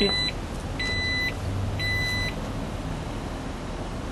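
2011 Jeep Grand Cherokee power liftgate closing at the push of a button, its warning chime giving short high beeps about once a second. The last beep ends a little over two seconds in.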